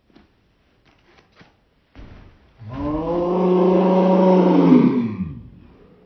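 A rock climber's loud, drawn-out growl of full effort, about two and a half seconds long, pulling hard through a move on a steep boulder problem. The growl holds one pitch and then sags lower as it dies away. A brief knock comes just before it.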